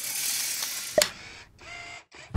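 Animated logo sting sound effect: a bright hissing swoosh lasting about a second, ending in a sharp click, then a quieter fading tail with a faint ringing tone.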